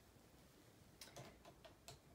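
Near silence, then from about a second in a few faint, short clicks and rustles of hands handling small things, as when reaching for hair ties.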